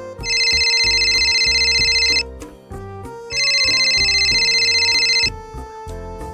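A telephone ringing twice, each ring a warbling high tone about two seconds long with a short gap between, over background music.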